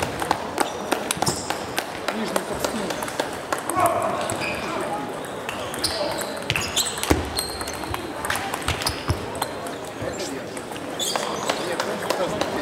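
Table tennis balls clicking sharply and irregularly off paddles and tables, from the match and neighbouring tables, over a background of many voices talking in a large sports hall.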